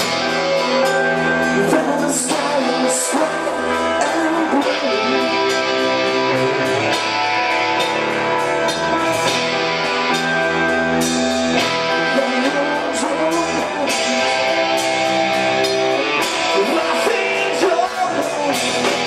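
Emocore band playing live: electric guitar, bass guitar and drums with a singer over them. The drums keep a steady beat throughout.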